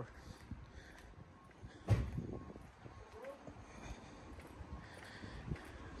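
Footsteps on a concrete driveway, faint, with one sharper thump about two seconds in.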